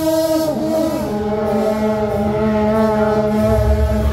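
Long brass procession horns blown together in long held notes. The pitch slides and shifts about half a second in, then several notes hold steady at once. A low rumble comes in near the end.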